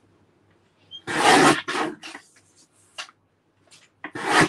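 Black cardstock scraping across a paper trimmer: a loud swish about a second in, then a shorter one and a soft rustle later.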